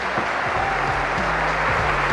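A brief music sting from a sports broadcast's round-title graphic, over steady arena crowd noise.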